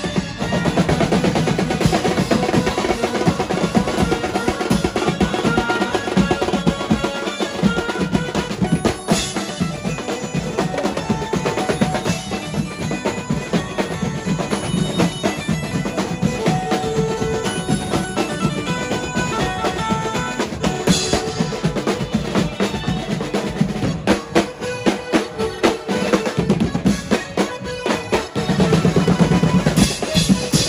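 Banjo-party band music: fast, dense drumming on snare drums, big drums and cymbals, with a melody line playing over it.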